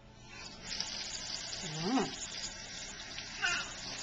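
Kitchen faucet turned on, water running from the tap into a stainless steel sink and splashing over a child's foot. The flow starts within the first half-second and builds to a steady rush.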